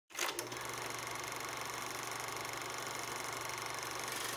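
Steady, rapid mechanical rattle over a low hum, the sound effect of a film projector running, opening an animated channel intro.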